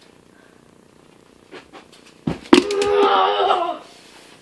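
A dunk on a small toy basketball hoop: two sharp knocks about two seconds in, then a loud, drawn-out, wavering yell lasting over a second.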